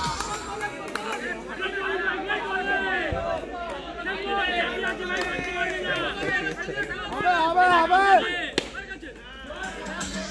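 Several people talking at once, overlapping chatter from a crowd, with one voice rising louder about seven to eight seconds in.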